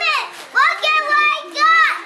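Young children's high-pitched voices calling out in three short utterances, with no clear words.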